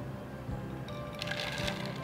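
White raisins tipped from a glass bowl into a plastic blender jar: a brief rattle of many small hits about a second in, over soft background music.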